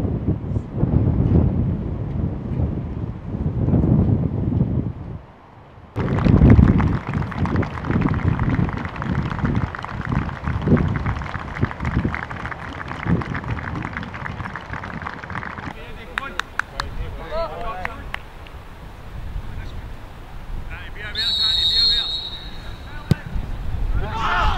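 Outdoor football match sound with wind buffeting the microphone and players' shouting voices. Near the end a referee's whistle is blown once for about a second.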